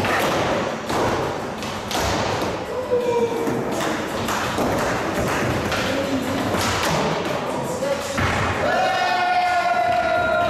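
Skateboards on a concrete floor: a steady roll of wheels broken by repeated sharp clacks and thuds as boards pop, land and strike a low box, about one every second.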